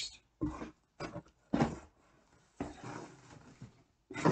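Rummaging in a cardboard box to pull an item out: three short knocks and bumps in the first two seconds, then about a second of rustling and scraping.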